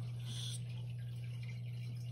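Aquarium equipment running with a steady low hum, and water trickling and dripping in the tank, with one brief splash-like drip about a third of a second in.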